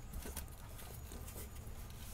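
Faint light taps and scrapes of a coil spring being worked by hand into its seat on the rear axle, over a low steady hum.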